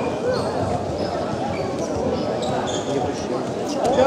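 Indistinct voices echoing in a large sports hall, mixed with repeated dull thuds and brief high squeaks.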